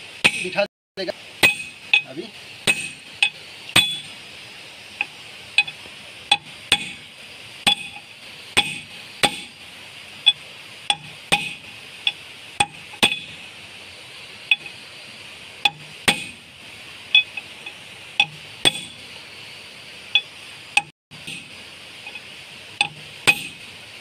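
Small hammer striking a steel bushing, metal on metal, to drive it into the boom pin bore of a JCB 3DX Super backhoe loader. About twenty sharp, ringing blows come at an uneven pace of roughly one a second.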